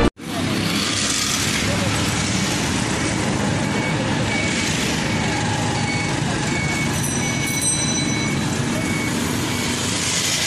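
Steady road traffic noise with indistinct voices, and a run of short, high beeps, about two a second, in the middle.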